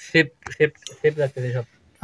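A metal spoon clinking against a small steel bowl, with a voice talking in short syllables over it.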